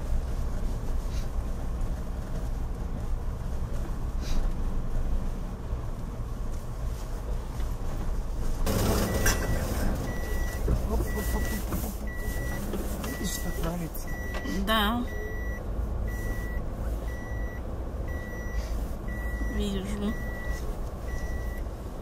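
Car cabin sound while driving slowly over packed snow: a steady low engine and tyre rumble. From about nine seconds in, a car's warning beep sounds in a steady series of short beeps at one pitch.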